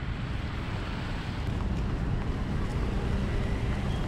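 Outdoor street noise: wind buffeting the microphone in a steady low rumble, over the sound of motorbike and scooter traffic on the road alongside.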